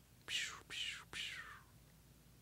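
A person whispering three short words in quick succession, breathy and without voice.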